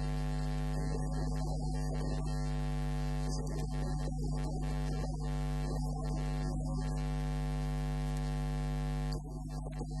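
Steady electrical mains hum with a stack of evenly spaced overtones and a hiss above it, unbroken by voice or music; it dips slightly about nine seconds in.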